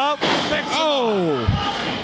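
A wrestler body-slammed onto a wrestling ring: one heavy thud about one and a half seconds in. Before it a voice shouts with a long falling pitch.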